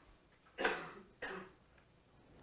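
Two short coughs, the first about half a second in and the second just after a second in: a person clearing their throat.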